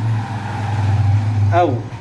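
No-frost refrigerator's evaporator fan motor running with a steady low hum.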